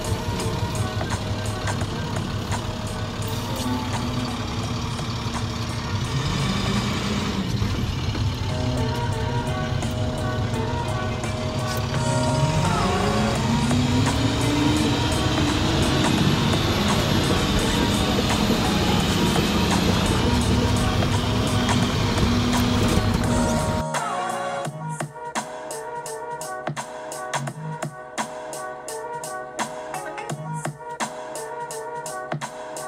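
Garbage truck engine and road rumble heard from inside the cab under background music. The engine note climbs in pitch for a few seconds as the truck picks up speed. A little after twenty seconds the truck noise drops out suddenly, leaving only the music with a steady beat.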